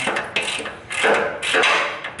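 Irregular metal clinks and scrapes of hand tools and bolts being worked on a car's front suspension lower control arm.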